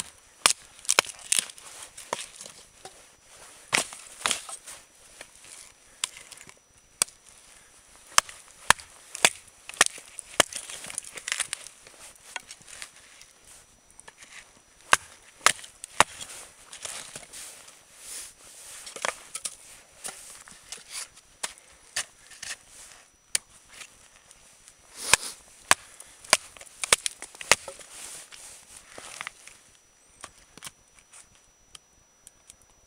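Large Busse fixed-blade knife chopping and splitting small sticks of firewood: dozens of sharp blade-into-wood strikes in uneven bursts, with short pauses between runs of quick blows.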